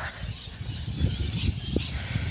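Uneven low rumble and knocking from a handheld phone microphone being carried while walking.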